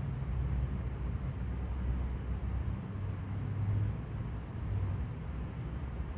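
Steady low background rumble, a pause with no voice in it.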